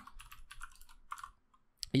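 Computer keyboard typing: a quick run of keystrokes over the first second and a half, then a pause. Speech begins at the very end.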